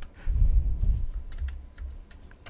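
A few sharp clicks of a computer mouse and keyboard, over a low rumble.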